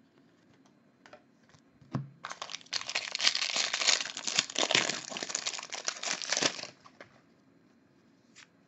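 The foil wrapper of a 2018 Bowman Draft baseball card pack being torn open and crinkled by hand. It makes a dense crackle lasting about four seconds, starting about two seconds in, after a few light clicks.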